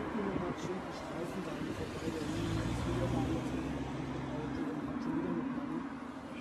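Muffled, indistinct talk with the low hum of a vehicle engine, which swells for a couple of seconds in the middle.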